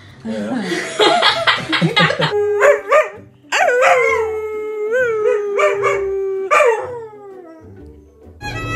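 Dog howling: a long, drawn-out howl that holds one pitch with slight wavers for about three seconds and falls away at the end, followed by a shorter falling howl. It comes after a rapid run of short sounds in the first two seconds.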